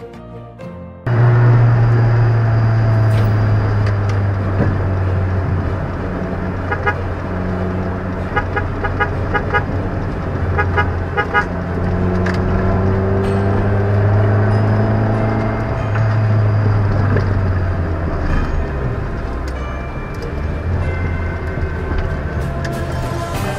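Road traffic: vehicle engines running with a steady low hum and a horn tooting. The music playing before it cuts off abruptly about a second in.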